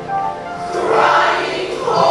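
Recorded gospel music with a choir singing; the choir swells in about half a second in.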